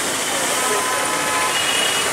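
A quadcopter camera drone's propellers humming steadily as it hovers, over an even wash of street noise.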